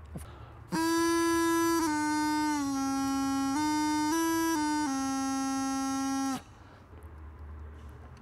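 Bagpipe practice chanter played by a beginner: a slow, simple tune of about seven notes on three pitches, stepping down, back up and down again, with a reedy buzz and no drones. It starts about a second in and stops abruptly after about six seconds.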